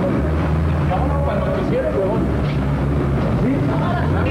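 Low rumble of a car engine and road noise, with muffled voices in the background.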